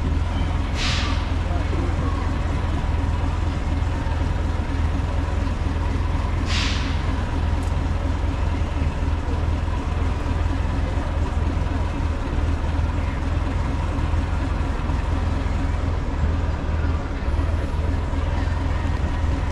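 Miniature steam locomotive standing at the station, with a steady low rumble and a faint high tone, broken twice by short hisses of steam, about a second in and again about six seconds later.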